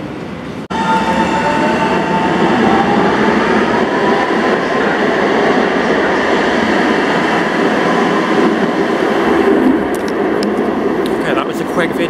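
An Ottawa O-Train Confederation Line light-rail train pulling out of an underground station: a loud steady rumble with its electric drive whining and rising slowly in pitch as it gathers speed. The sound cuts in abruptly just under a second in.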